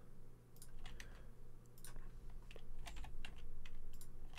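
Computer keyboard keystrokes: scattered, irregular clicks as Blender shortcut keys are pressed, over a faint steady electrical hum.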